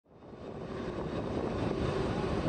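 Jet engines of a C-5 Galaxy transport aircraft running as it rolls along the runway, a steady engine noise with a faint hum that fades in over the first half second.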